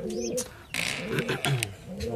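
Domestic pigeons cooing low in the nest box, with a short rustle and a few clicks about a second in.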